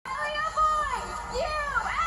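High-pitched excited voices whooping and squealing in long cries that glide up and down in pitch, overlapping near the end.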